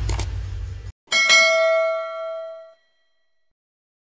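Outro sound effects: a rushing noise that cuts off abruptly about a second in, then a single bright bell-like ding that rings out and fades over about a second and a half.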